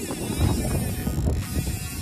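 Wind buffeting the microphone over the rushing water of a river, an uneven low rumble.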